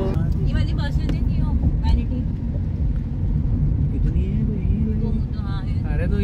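Steady low rumble of a car driving, heard from inside the cabin, with brief snatches of voices.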